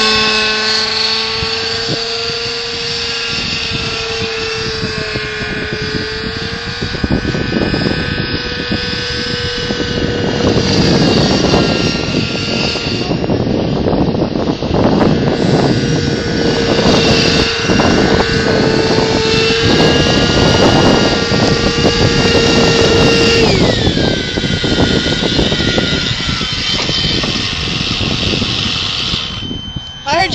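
Synergy N5 nitro RC helicopter in flight, its engine and rotor head holding a steady pitch that wavers now and then, with the head speed running low so the engine bogs under load. About three-quarters of the way through, the pitch slides down as the helicopter lands and winds down.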